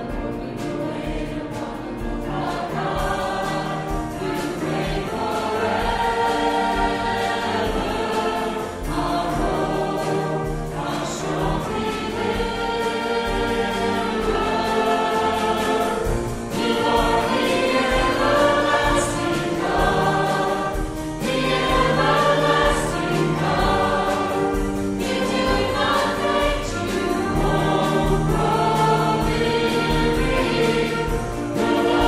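Church congregational singing: many voices singing a hymn together, line by line, with short breaks between phrases.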